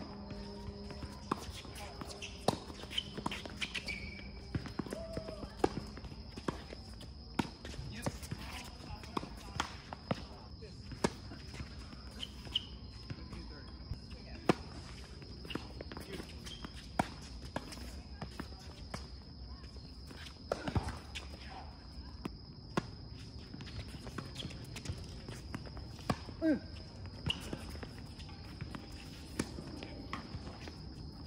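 Tennis ball being hit back and forth in a doubles rally on a hard court: sharp pops of racquet strings striking the ball and ball bounces, repeated every second or so, with sneakers scuffing on the court surface. A steady high-pitched tone runs underneath throughout.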